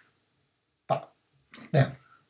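A short vocal sound from the narrator about a second in, then the spoken word "now".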